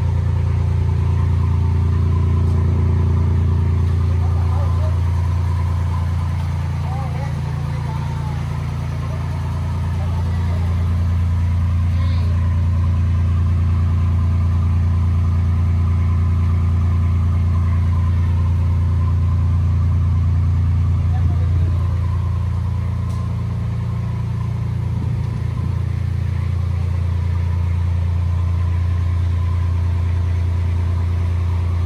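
A steady low engine rumble that eases off briefly twice, about seven seconds in and again past the twenty-second mark, with faint voices in the background.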